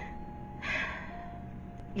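A woman's single short audible breath, taken in a pause mid-sentence.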